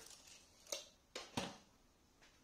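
Light handling clicks and taps from a tape measure and pencil being moved and set down on a workbench: four short, sharp knocks within about a second and a half, the last two loudest.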